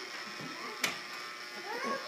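Toy vacuum cleaner's small motor buzzing steadily as it is pushed along a wooden floor. There is one sharp click a little under a second in, and a short rising squeal near the end.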